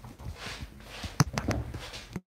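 A few light clicks and knocks from someone moving and handling things at a desk, the sharpest about a second in.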